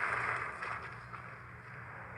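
Quiet outdoor background: a low steady hum under a faint hiss that fades away in the first second.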